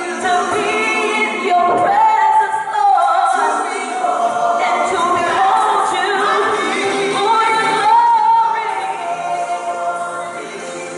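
Women's voices singing a church praise song, with several long held notes.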